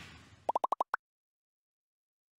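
Logo animation sound effect: a fading whoosh, then six quick rising blips in under half a second, the last one pitched higher.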